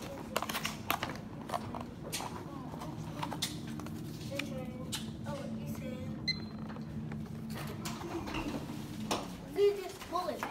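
Steady low hum with scattered light clicks and taps and faint voices in the background. Near the end comes a louder knock as a glass-panelled double door is pushed open by its handle.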